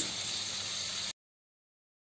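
Rump steaks sizzling in melted garlic butter in a pan, a steady hiss that cuts off suddenly about a second in, leaving silence.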